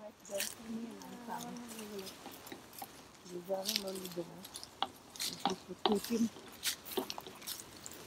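Faint, indistinct voices in the background with scattered short crunches and rustles of people walking on leaf litter and brushing through leafy branches.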